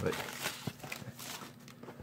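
Plastic shrink wrap crinkling and a cardboard card box being handled, heard as faint, scattered crackles and light taps.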